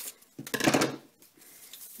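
Scissors and a paper strip being handled: one short, scratchy burst about half a second in as the last of the paper is cut through and the scissors are put down, followed by quieter rustling of the paper.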